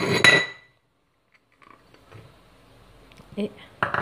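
A ceramic dish clinks against a stainless steel mixing bowl as butter cubes are tipped in. It is one short, ringing clink right at the start.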